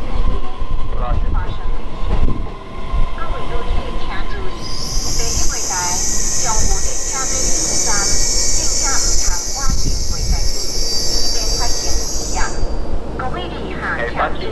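Electric multiple-unit passenger train rolling slowly into a station platform and braking to a stop, with a steady low rumble throughout. A loud high-pitched brake squeal starts about five seconds in and cuts off near thirteen seconds.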